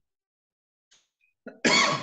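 Near silence, then a man's short, loud cough near the end.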